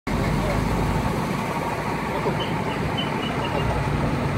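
Steady outdoor noise with a low rumble under several people's voices talking, with a short run of high chirps about two and a half seconds in.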